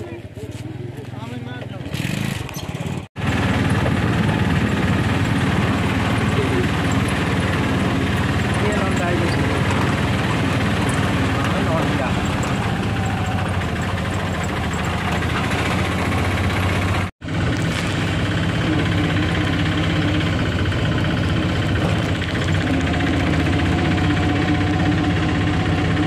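A small vehicle's engine running steadily, heard from inside its open-sided passenger cabin with road and wind noise as it drives along. The sound begins about three seconds in and breaks off briefly at a cut partway through.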